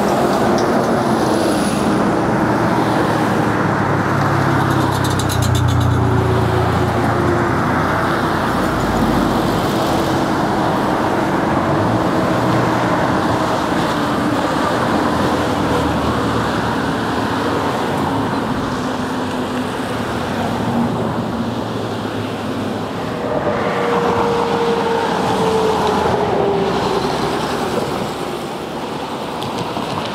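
Road traffic passing steadily close by, with vehicles going by one after another. A deeper rumble from a heavier vehicle comes about five seconds in, and another passing vehicle gives a falling whine near the end.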